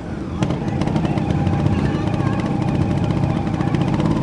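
Trials motorcycle engine running at steady revs, with no clear rise or fall.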